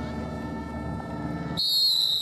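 Referee's whistle blown in one long, high blast that starts suddenly about one and a half seconds in and falls slightly in pitch, ending the play after a tackle. Before it there is mixed outdoor background noise.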